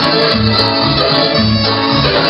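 Live band music from guitars and a keyboard playing an upbeat chorus tune, with a steady pulse of low bass notes.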